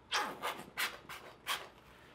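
Plastic squeeze bottle of pink paint being squeezed upside down, paint and air spluttering out of the nozzle in about five short spurts.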